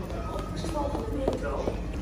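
Steady low rumble of an Amsterdam GVB metro train standing at an underground platform, with faint voices over it.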